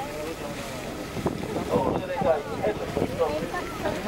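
People talking indistinctly, with wind buffeting the microphone.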